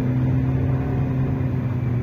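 Car engine pulling up a steep hill, heard from inside the cabin as a steady low hum that holds one pitch.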